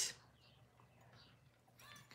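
Near silence: room tone, after the last syllable of a woman's speech ends at the very start.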